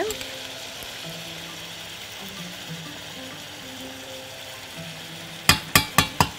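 Shrimp frying in oil in a stainless steel pan with sesame seeds, a steady sizzle. Near the end a metal spoon starts stirring, knocking sharply against the pan a few times.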